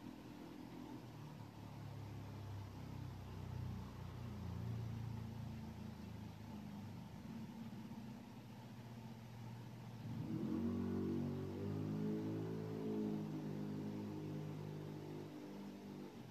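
A low mechanical hum with several steady pitched lines. It grows louder and fuller about ten seconds in, then stops abruptly at the end.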